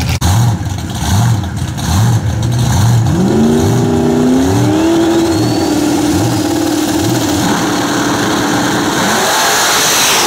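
Drag cars' engines revving: rhythmic blips of the throttle for the first few seconds, then an engine rising and held at high revs while staged at the start line, then a louder burst near the end as the cars launch.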